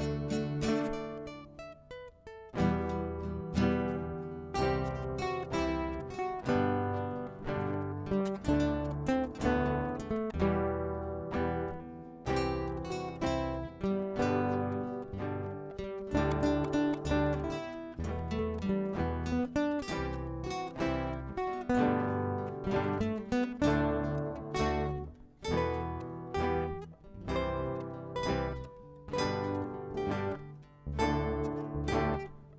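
Ensemble of acoustic guitars playing a piece together, plucked notes over a regular bass pattern, thinning briefly about two seconds in.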